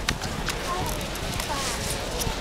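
Distant, indistinct voices over steady wind noise on the microphone, with a couple of sharp clicks near the start.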